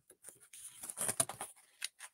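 Picture-book page being turned: a short paper rustle with a few soft clicks, loudest about a second in.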